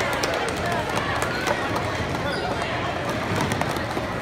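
Crowd voices chattering, with a few sharp clicks and clatters of plastic sport-stacking cups being stacked and set down on the mat.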